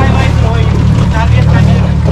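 Mercury FourStroke outboard motor running steadily, driving the boat along: a continuous low engine hum.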